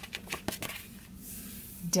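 Stiff sticker-book pages rustling and flapping as they are flipped over, a few short papery clicks in the first second or so.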